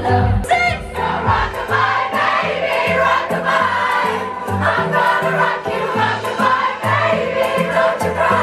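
Live pop concert heard from the audience: a band with a pulsing bass line and a female singer, with many voices from the crowd singing along as she holds the microphone out to them.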